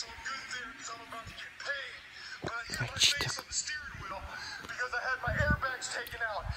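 Background music and bits of puppet-character voices, played through a small device speaker and picked up by a phone microphone. There is a short, sharp, loud noise about halfway through.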